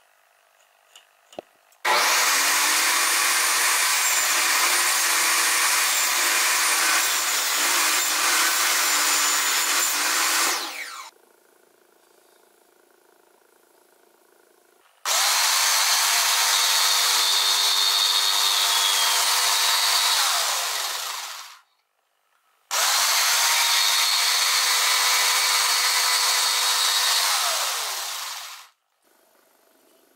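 DeWalt jigsaw cutting slots into softwood, run in three spells of several seconds each, each winding down as it is switched off. A few light taps come just before the first cut.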